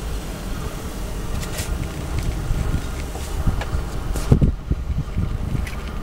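Wind buffeting the microphone: a low, uneven rumble, with a stronger gust about four seconds in.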